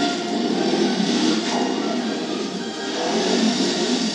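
A go-kart engine running at speed under the film's background music, heard through a TV speaker.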